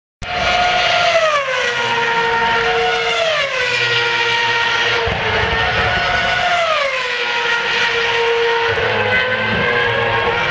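Formula 1 cars' 2.4-litre V8 engines running at very high revs on track. The high-pitched engine note drops in pitch several times, about every two seconds.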